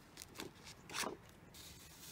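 Faint rustling as embroidery floss is drawn through a stab-binding hole in a stack of paper pages, with a few soft swishes, the loudest about a second in.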